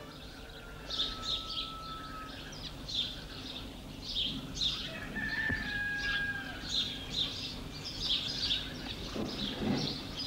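Birdsong: small birds chirping in quick short calls throughout, with a couple of longer whistled notes.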